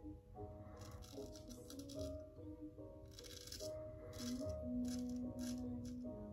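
Quiet background music with held notes. Over it come several short scrapes of a straight razor shaving lathered stubble on the upper lip, most of them in the second half.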